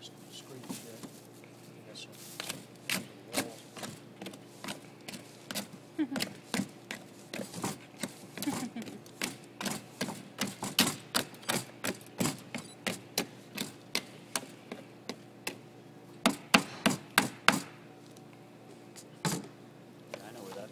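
Electric hand mixer running in a plastic bowl of stiffening ice cream, with a steady motor hum and irregular sharp clacks, two or three a second, as the beaters knock against the bowl and frozen lumps. The clacking stops a couple of seconds before the end.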